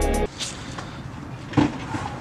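Background music that cuts off suddenly just after the start, leaving faint background noise with a brief knock about one and a half seconds in.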